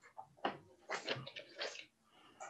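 A few short knocks and rustling noises, the first and sharpest about half a second in.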